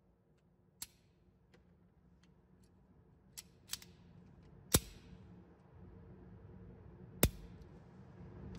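A few short, sharp clicks spaced seconds apart over faint hum: one about a second in, two faint ones around three and a half seconds, and the two loudest near the middle and toward the end.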